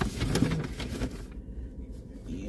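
Paper wrapper crinkling as a piece of fried chicken is handled, a quick run of crackles in the first second that then dies down, over a steady low rumble.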